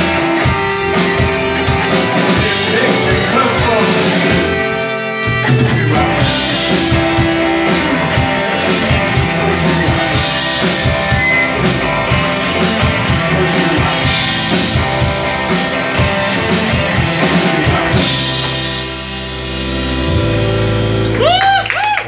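Live rock band playing an instrumental passage on electric guitars, bass and drum kit. Near the end the drums stop and the held guitar chords ring out.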